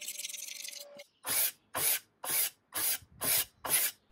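Hand scraper stripping old varnish off a wood-veneered table top. There is a stretch of quick, continuous scraping, then a short pause about a second in, then six separate scraping strokes at roughly two a second.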